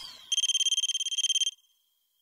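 Logo sting sound effect: a high, rapidly pulsing electronic ring, like a buzzer or bell, starting about a third of a second in and cutting off after just over a second, leaving a faint high tail.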